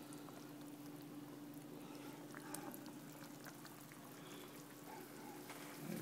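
Egg drop soup simmering in a frying pan on a stove: faint, irregular bubbling and small ticks over a steady low hum.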